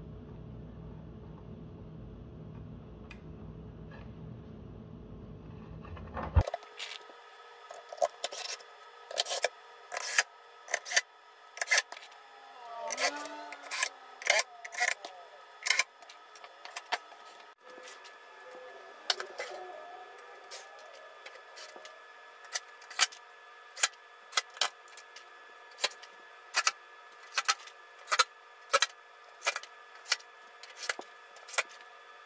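A steady low hum that cuts off about six seconds in, followed by a string of sharp clicks and knocks, roughly one a second, from a JBL PRX800-series speaker's tweeter horn and back panel being handled and refitted after a diaphragm replacement.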